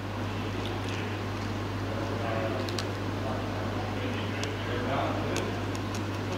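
Steady low hum of room air conditioning, with a few faint, scattered clicks of a knife cutting a frozen fish tail on a plastic cutting board.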